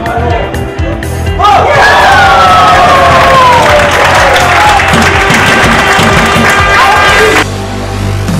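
Background music, with a loud burst of cheering and long shouts about one and a half seconds in, as a goal is scored. The cheering is cut off suddenly near the end.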